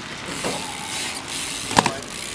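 BMX bike rolling on asphalt: a steady hiss of tyres on the surface, with one sharp click near the end.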